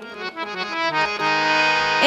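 Harmonium playing a few short notes, then settling into a steady held chord a little after a second in.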